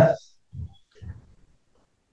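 A man's voice finishing a spoken word, then a pause holding two short, faint, low sounds, about half a second and a second in.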